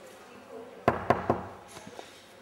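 Three quick knocks on a door, about a fifth of a second apart.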